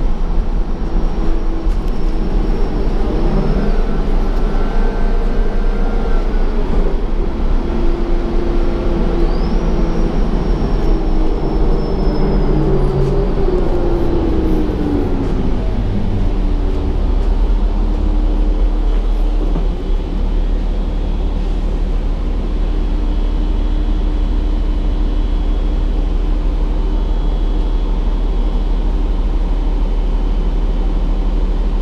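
Gillig Advantage transit bus heard from inside the passenger cabin while under way: a constant low road and engine rumble, with the drivetrain's whine rising and falling in pitch as the bus speeds up and slows through the first half. It settles into a steadier drone later on.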